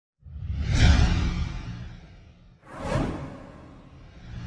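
Two whoosh sound effects for an animated intro title, each with a low rumble: the first swells up a moment in and fades away over about two seconds, the second hits suddenly near the middle and falls in pitch as it dies away.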